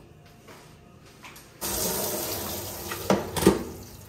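Water running from a hand shower into a plastic basin, starting suddenly about a second and a half in, with two knocks near the end.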